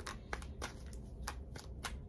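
Hands handling cards and objects on a tarot-reading table: about six light, faint clicks and taps spread over two seconds.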